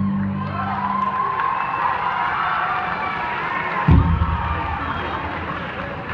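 A live rock band's final chord rings out and fades, and an audience cheers with high whoops. There is a low thump about four seconds in.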